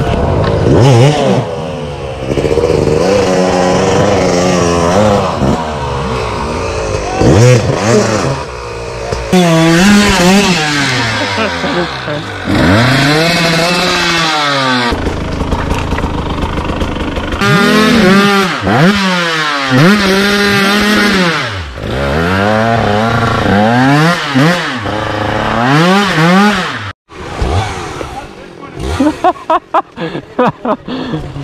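Dirt bike engines revved hard in repeated bursts, pitch climbing and dropping again and again, as the bikes are worked over fallen logs on a steep trail. The sound breaks off suddenly once near the end.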